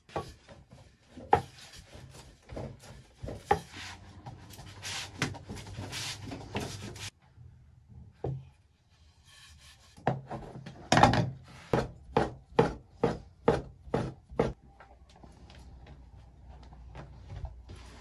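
A rolling pin works noodle dough on a wooden board with irregular rubbing and knocks. About ten seconds in, a cleaver cuts the folded dough sheet into hand-rolled noodles, chopping steadily on the board about three times a second for several seconds.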